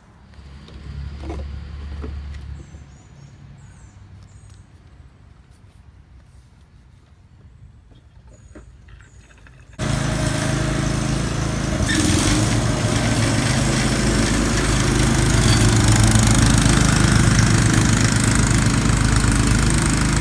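Faint handling clicks and a brief low rumble, then, after a sudden cut about halfway through, a Cub Cadet riding mower's engine running loud and steady as it mows.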